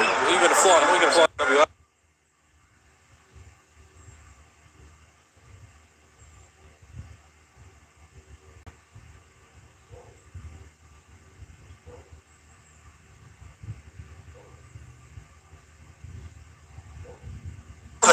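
Live basketball broadcast audio, voices and arena sound, cuts off abruptly about two seconds in as the stream drops out. What follows is only faint, irregular low rumbling with a few soft knocks.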